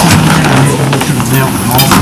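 Indistinct low talk from several people at a meeting table, with papers being handled.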